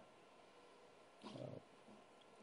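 Near silence: faint room tone, broken about a second and a half in by one brief, quiet vocal murmur, a hesitation sound from the lecturer mid-sentence.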